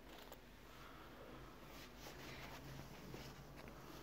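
Near silence: room tone with faint rustling and a few light clicks.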